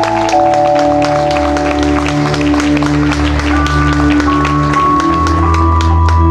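Instrumental passage of a song's backing music: sustained chords over a steady bass line that moves every second or so, with a fast, even ticking beat on top and no voice.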